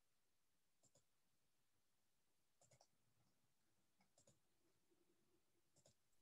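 Near silence, broken only by a few very faint, scattered clicks.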